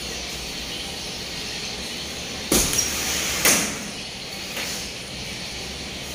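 Two punches landing on boxing gloves during sparring, about a second apart, over a steady hiss of gym background noise.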